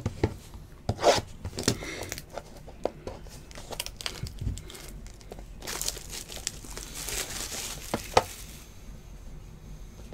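Trading-card pack wrapper crinkling and being torn open by hand, in sharp irregular crackles, with a longer stretch of crinkly tearing from about six to eight and a half seconds in.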